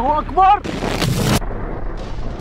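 A loud explosion about half a second in, a blast of close to a second that stops abruptly. Men shout just before it.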